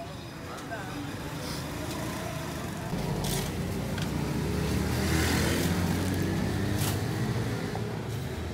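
A motor vehicle's engine passing close by on the street, a low hum that swells about halfway through and eases off toward the end, over background chatter, with a couple of sharp clanks.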